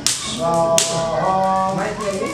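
A man's voice chanting Sanskrit mantras in long held notes, with short breaks between phrases. Three sharp clicks cut through it: one at the start, one a little under a second in, and one near the end.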